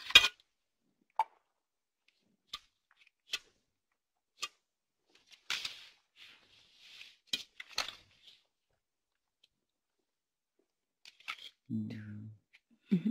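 Playing cards being dealt onto a table in a quiet room: a few faint, sharp clicks about a second apart. A soft rustle and two more clicks come midway, and a short low hum of a voice near the end.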